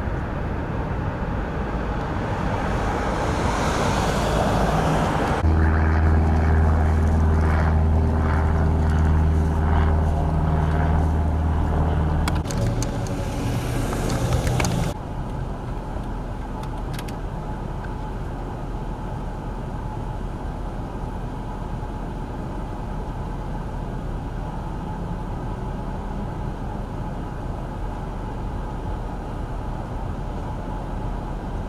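Road traffic: a vehicle passes, then a vehicle engine runs close by with a steady low hum. About halfway through it drops suddenly to a quieter, even traffic rumble.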